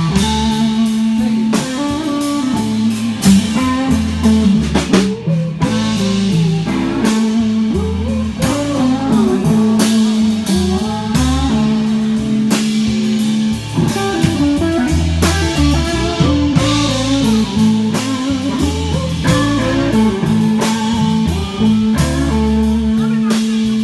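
A live band playing an instrumental, blues-rock-style passage: electric guitar over a drum kit struck with sticks, with steady low notes underneath.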